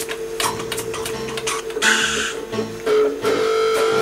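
Blues music on guitar: a repeating low bass line under one steadily held higher note, with sharp strummed or picked strokes.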